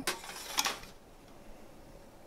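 Liquid poured from a stainless steel vacuum flask onto the volcano garnish base to make its smoke effect: a short hiss lasting under a second, then only faint small clicks.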